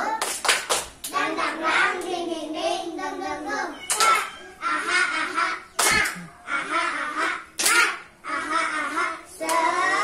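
Voices of a group of young children and a woman, with several sharp hand claps among them.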